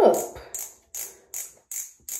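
Twist-up mechanism of a Revlon Kiss Cushion Lip Tint tube being turned by hand, giving four short plastic clicks a little under half a second apart. It takes many turns to bring the tint up.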